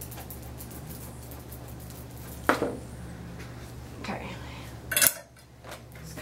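A few sharp clicks and clinks of grooming tools being handled, one about two and a half seconds in and another near five seconds, over a steady low hum.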